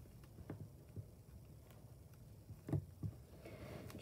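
Faint handling sounds of hands wrapping a small elastic hair band around a doll's hair, with a few soft clicks about half a second in and again near three seconds.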